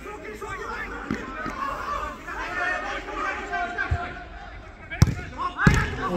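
Players' voices calling across a football pitch, then two sharp thuds about five seconds in, a little over half a second apart: a football being struck hard, on the attempt that nearly goes in.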